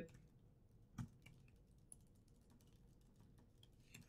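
Faint, sparse keystrokes on a computer keyboard as text is typed, the clearest click about a second in.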